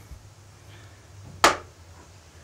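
A single sharp tap about a second and a half in, as a small plastic cup is pressed over a spider against a wooden shed wall.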